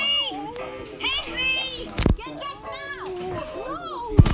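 Cartoon soundtrack: high-pitched character voices making wordless sounds over music, with a sharp click or knock about two seconds in.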